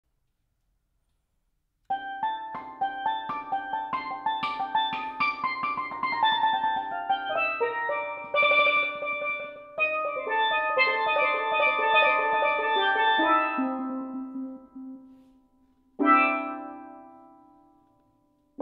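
Steelpans by Steve Lawrie played improvised with five mallets. A quick run of ringing notes starts about two seconds in, thins out and fades, and near the end a single chord is struck and left to ring away.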